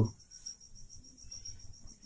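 Crickets chirring in the background: a steady, high-pitched trill that goes on without a break.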